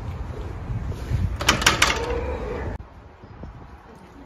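Automatic glass double doors opening: a clatter of clicks about one and a half seconds in, followed by a short steady hum, over low wind rumble on the microphone.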